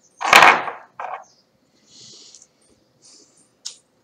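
Handling noise while a quartz crystal point is picked up: a brief loud rustling rush, a shorter one after it, then soft scrapes and a single click near the end.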